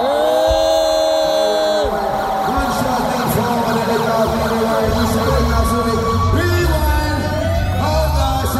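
Live hip-hop concert music played over an arena PA: sustained notes that slide in pitch, with a heavy bass beat coming in about five seconds in.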